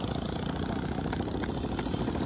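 Motorcycle engines running steadily at low speed.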